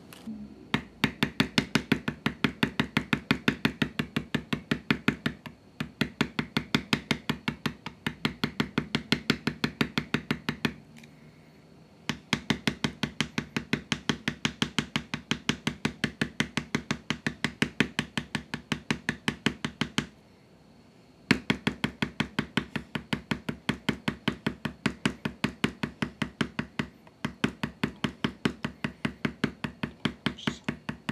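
A mallet rapidly striking a hand-held leather-tooling stamp on veg-tan leather, several sharp taps a second, texturing the background of a tooled design. The taps come in runs of a few seconds, with brief pauses where the stamp is moved, around five, eleven and twenty seconds in.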